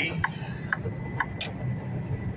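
Steady low rumble of a semi truck's engine and road noise heard inside the cab, with a few light clicks.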